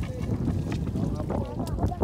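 Low wind rumble on the microphone, with water sloshing and faint voices behind it.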